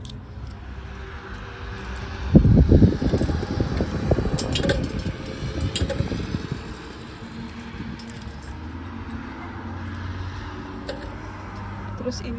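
Coins being fed one by one through the slot of a painted metal cash box, clinking and jangling as they go in. A low rumble of handling noise is the loudest sound, starting about two seconds in and fading by about six seconds.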